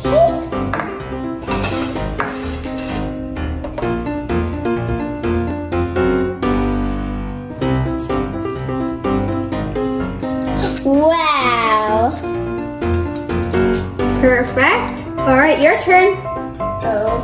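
Background music with a steady repeating melody and beat, with a brief sliding, swooping voice-like sound about eleven seconds in and a child's voice near the end.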